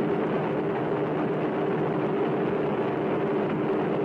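A steady, even roar of noise with a low held hum underneath, unchanging throughout.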